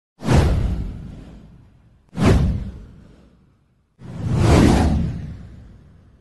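Three whoosh sound effects about two seconds apart, each a sudden rush of noise that fades away over a second or so; the third swells up more gradually before it fades.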